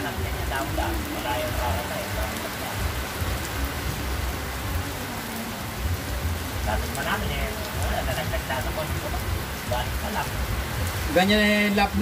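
Steady rain falling on the loft roofs and yard, an even hiss throughout, with faint voices in the background and a man speaking near the end.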